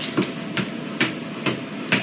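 Five short, sharp knocks at a fairly even pace of about two a second.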